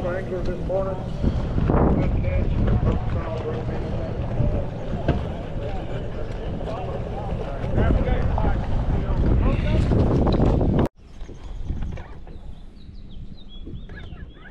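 Wind buffeting the microphone over the low rumble of idling bass-boat outboard motors, with voices mixed in. The sound cuts off abruptly about eleven seconds in, leaving much quieter water sounds and faint high chirps.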